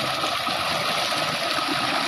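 Water gushing steadily from a tubewell's outlet pipe into a concrete trough and splashing down the channel below.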